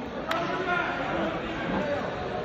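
Indistinct chatter of many people talking in a large gym hall, with one sharp click about a quarter second in.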